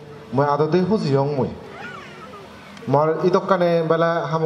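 A man speaking in two long phrases with a pause between them.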